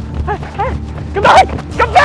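A man's short, high-pitched wordless cries and whimpers in distress, coming in quick bursts and loudest a little over a second in.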